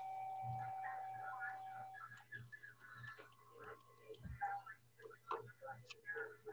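Faint, indistinct voices over a low electrical hum, with a steady high tone held for about the first two seconds and then stopping.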